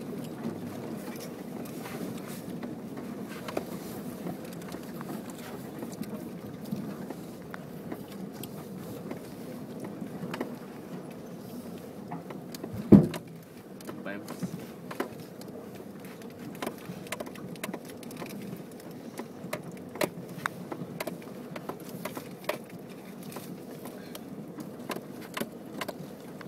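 Inside a Nissan X-Trail driving slowly off-road over rough, hummocky grassland: a steady low cabin rumble with frequent small knocks and rattles as the car bumps over the ground. One loud thump comes about halfway through.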